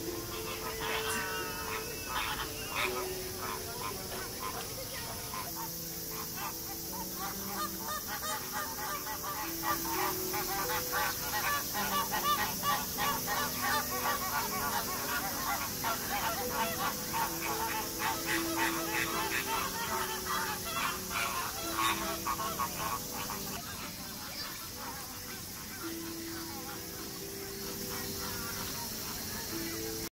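A flock of flamingos calling: a dense run of rapid, overlapping calls that dies down near the end.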